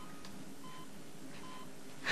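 Hospital patient monitor beeping softly: two short electronic beeps about three-quarters of a second apart.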